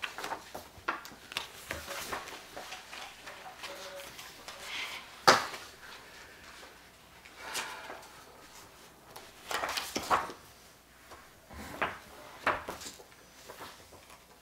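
Sheets of paper rustling and pages being turned and handled on a table, in short irregular bursts, with one sharp tap about five seconds in.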